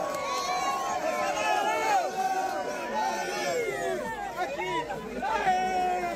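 A crowd of people talking and calling out over one another, many voices overlapping with no single one standing out.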